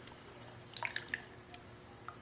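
Beer being poured from a can into a glass: a few short glugs and splashes, the loudest about a second in.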